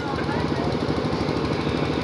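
A small engine running steadily, heard as a rapid, even low pulsing.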